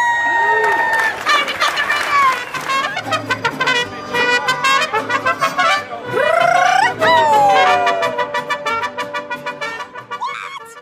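Mariachi band playing, trumpets carrying the tune over strummed guitars.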